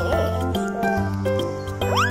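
Background music with held notes over a steady bass line. A short rising sound comes near the end.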